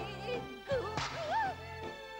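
Lively folk-style band music for a dance number, with a sliding, wavering melody line and a couple of sharp cracks near the middle.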